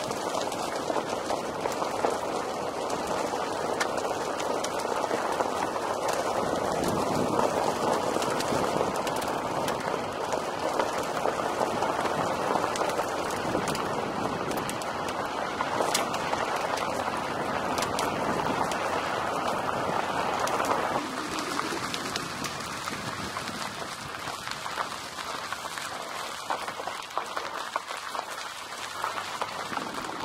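Car tyres rolling over a loose gravel road. There is a steady crunching hiss with scattered stones clicking and pinging off the car, and it gets quieter about two-thirds of the way through.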